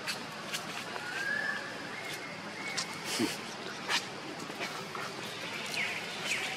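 Outdoor forest-floor ambience with scattered sharp clicks of dry leaf litter and twigs, and two thin, held animal calls, one about a second in and a higher one about two seconds in.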